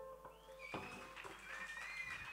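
The band's last chord ringing out and fading away, then faint high whistles from the audience that rise and bend in pitch.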